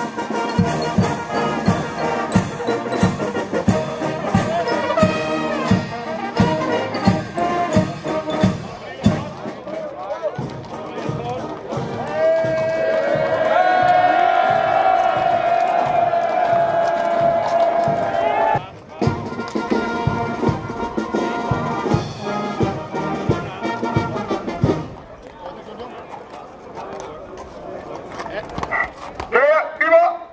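Brass band playing a march, with a steady bass-drum beat about twice a second, then a long held chord. The music stops about 25 seconds in.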